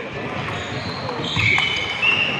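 Table tennis rally: the celluloid ball clicking off bats and table, echoing in a large hall. Squeaks from players' shoes on the wooden floor come in the second half.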